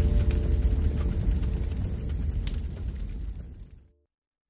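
Closing held chord of a TV programme's title music over a deep rumbling boom, fading out to silence near the end.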